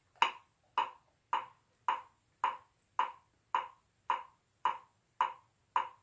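Metronome set at 108 beats per minute, ticking steadily with even, short clicks a little under two per second.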